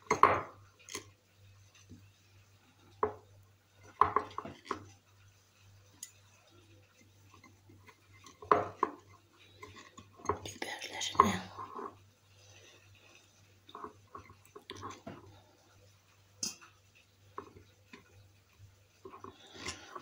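Scattered knocks, clinks and rustles as cucumber pieces and peppers are pushed by hand into a glass jar, with the jar now and then knocking on a stone counter. The handling is busiest about ten to eleven seconds in.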